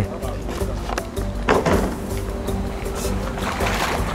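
Background music with steady held notes, over a few short splashes of a net and pole moving through shallow pond water.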